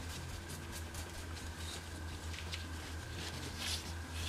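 Faint, scattered strokes and light taps of a paintbrush working weathering pigment powder into pleated dress fabric, over a steady low hum.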